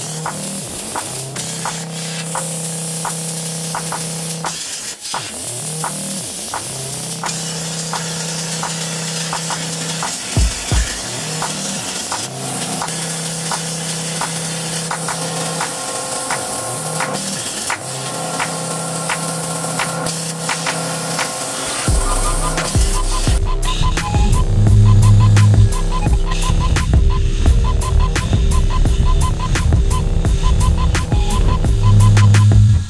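Xtreme CNC plasma table cutting steel plate: the plasma torch gives a steady hiss. Background music plays along, and a heavy, pulsing bass beat comes in about two-thirds of the way through.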